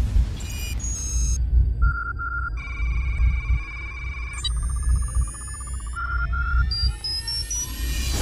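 Synthesized sci-fi interface sound effects over a deep steady rumble: held electronic beeps and computer-like data tones, then rising sweeps from about halfway, and a short run of beeps stepping up in pitch near the end.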